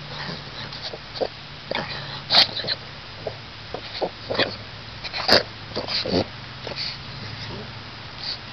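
Silky terrier working its muzzle in shallow pool water after a crawfish, making short, irregular dog noises and small splashes. Two sharper, louder noises stand out, about two and a half and five seconds in.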